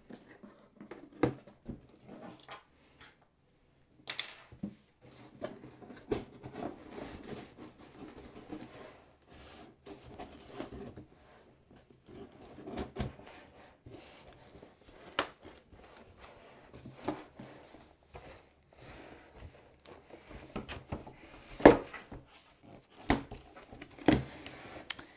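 A knife slitting packing tape on a cardboard box, then hands prying and pulling at the cardboard flaps: irregular scraping, rustling and small knocks. One sharp knock near the end is the loudest sound.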